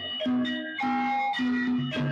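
Live Javanese gamelan music for a jathilan horse dance: metal-keyed instruments strike a melody of ringing notes, several a second.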